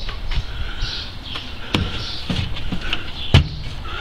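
Two sharp knocks on wood about a second and a half apart: footsteps stepping up onto a chicken coop's OSB floor.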